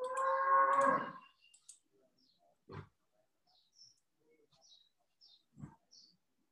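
A single drawn-out pitched call, about a second long at the start, followed by a few faint short clicks.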